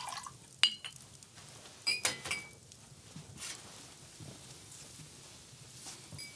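Glass clinking as whisky is served from a decanter into a cut-glass tumbler: a light clink a little after the start and a ringing clink about two seconds in.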